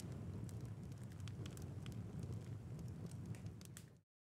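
Faint low rumble with scattered small crackles and clicks, fading out right at the end.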